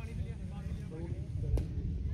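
Wind buffeting the phone's microphone in a low rumble, under faint, indistinct voices from across the field. A single sharp click comes about one and a half seconds in.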